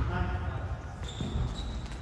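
Sneakers on a gym floor giving a thin, high squeak about a second long from the middle, as volleyball players shift for the ball, with players' voices in the first half.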